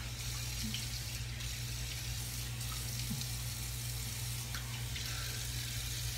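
Tap water running steadily into a bathroom sink while shaving lather is rinsed off a face.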